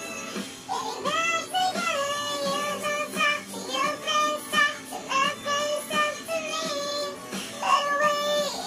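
Background music: a song with a high sung melody holding notes for up to about a second over its accompaniment.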